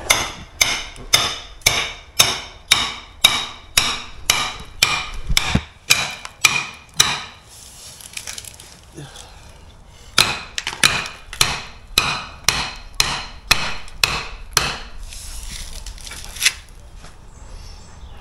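Hand hammer and chisel chopping old bricks and mortar out: steady blows about two to three a second, each with a short metallic ring. The blows stop for a couple of seconds in the middle, then start again, with a last single blow near the end.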